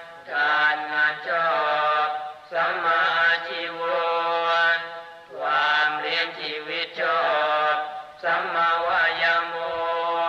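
A single voice in melodic Buddhist chanting, holding long wavering notes in phrases of one to two and a half seconds with short breaths between them.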